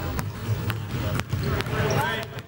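A basketball bouncing on a hardwood court: about four sharp bounces roughly half a second apart, over background music.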